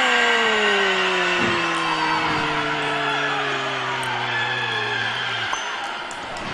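A commentator's long drawn-out goal shout, one unbroken held call that lasts about five and a half seconds, its pitch sliding slowly downward before it cuts off near the end.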